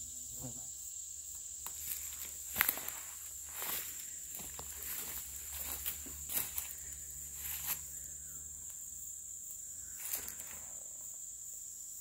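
Footsteps rustling and crackling through dry brush and dead vines, with a few sharper crackles, over a steady high-pitched insect drone.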